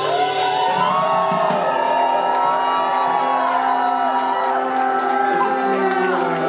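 Live band with keyboard, electric guitar, horns and drums holding long sustained chords, with the crowd whooping and shouting over the music.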